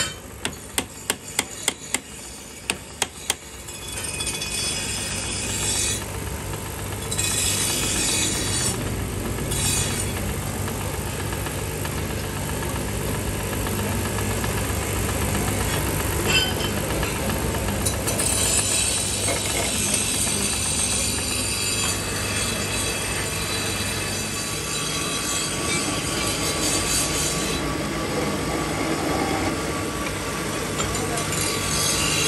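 A hammer strikes steel in a quick series of sharp taps over the first three seconds or so. About four seconds in, a belt-driven metal lathe starts up and runs steadily, with a low hum and mechanical clatter.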